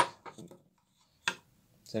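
Steel hammer-form die bar being handled against a sheet-steel floor panel: the ringing tail of a metal clank at the start, a few faint clicks, then a single short knock a little after a second in.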